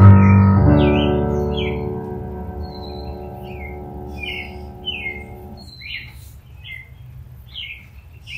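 The last chord of a piano offertory, struck just under a second in and fading out at about six seconds. Over it and after it, birds chirp repeatedly in short falling notes.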